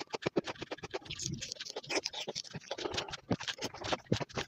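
Close-miked mouth sounds of biting into and chewing an orange slice: a rapid run of crisp clicks and crunches, turning softer and less distinct in the middle.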